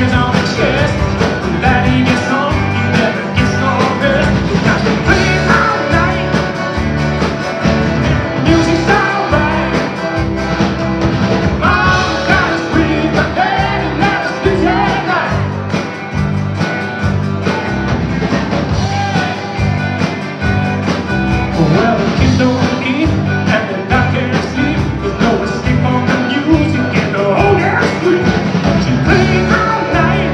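Live band playing an upbeat rock song with acoustic and electric guitars, keyboard and a steady beat, a man singing lead at the mic.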